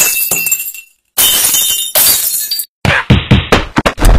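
Glass-shattering sound effect: a sharp crash at the start, then more bursts of crashing noise, each cutting off abruptly.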